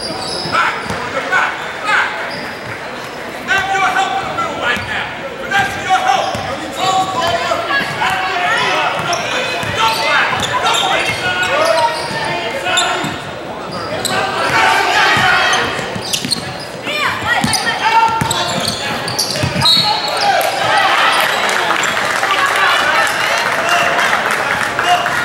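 Basketball bouncing on a hardwood gym floor during play, with voices of players and spectators calling out, echoing in a large hall.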